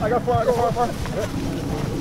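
Indistinct voices calling out over steady wind noise on the microphone, the voices strongest in the first second and fainter after.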